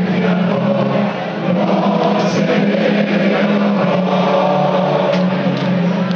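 Live folk-metal band playing loud, continuous music with singing, over a sustained low drone.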